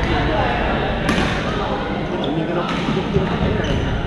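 Badminton rackets striking a shuttlecock: a few sharp hits, one or two seconds apart, over the chatter of many players echoing in a large gym hall.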